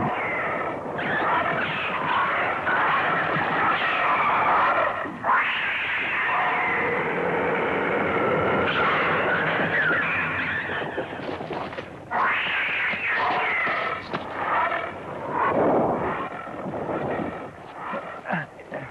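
Giant-monster roar and screech sound effects, several overlapping, shrill and wavering in pitch, running almost without a break and dropping out briefly about twelve seconds in.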